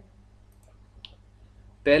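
A single short, sharp click about a second in, during a quiet pause over a faint low hum.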